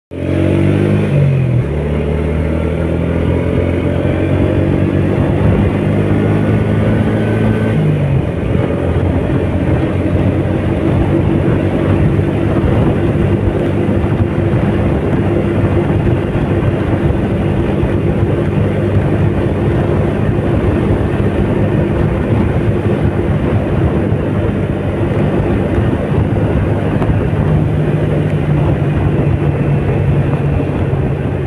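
Small motorcycle engine running under way, heard from the rider's seat. Its note climbs and falls back twice in the first eight seconds, then holds steady, over a constant wash of wind and road noise.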